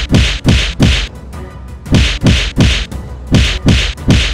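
A rapid series of loud whacks, about three a second in quick runs with a short pause about a second in, keyed to a cat's paw swipes at a green plastic frog toy on a string.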